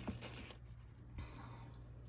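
Quiet room tone: a steady low hum with a faint click or two from handling.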